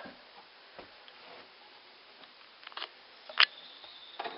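A few light clicks and knocks over faint hiss, the sharpest about three and a half seconds in, as the shelter's trail register box is handled and opened.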